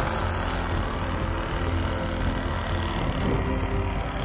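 Handheld corded electric saw running steadily as its blade cuts through a pig carcass.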